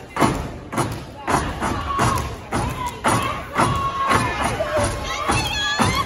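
Step routine by a line of women on a stage: feet stamping and hands clapping in a steady rhythm, about two strikes a second, with voices calling out over it and the audience cheering.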